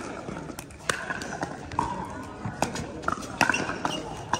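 Pickleball rally: several sharp pops of paddles striking the hard plastic ball, unevenly spaced, with faint voices in the background.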